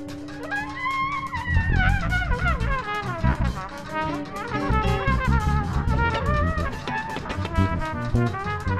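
Trumpet improvising a winding, free jazz line that slides up and down in pitch. Electric bass and drums play busily underneath.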